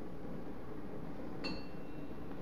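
A single light metallic clink about one and a half seconds in, with a short ringing tail, as a metal lead ladle knocks against metal.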